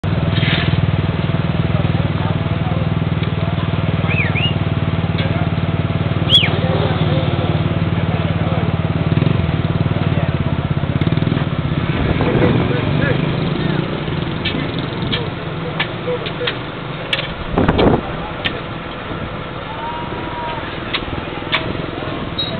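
Asphalt paver's diesel engine running steadily with voices over it. The engine gets quieter about twelve seconds in. Several sharp knocks and a louder thump follow in the second half.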